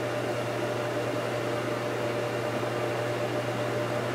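Steady background hum and hiss with a faint constant high tone, unchanging throughout, like a fan or appliance running in a small room.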